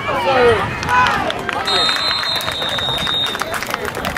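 A whistle blown on a football field: one long, steady, shrill blast that starts a little under two seconds in and lasts about a second and a half. It follows shouting voices and comes over short, sharp clicks.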